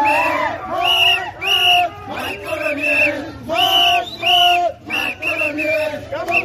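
A crowd of street protesters chanting and shouting together, loud shouted syllables repeating in a steady rhythm.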